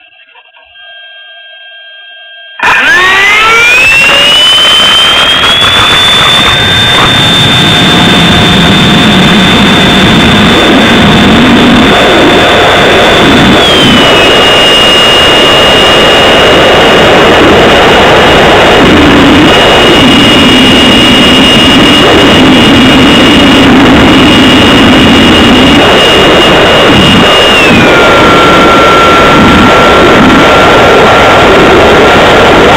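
Model airplane motor and propeller, heard very loud through the onboard camera's microphone: about two and a half seconds in it throttles up from rest, a high whine gliding up over a few seconds for the takeoff run, then holding steady over a heavy rush of prop wash and wind. The whine steps down in pitch about halfway through and again near the end as the throttle is eased back in flight.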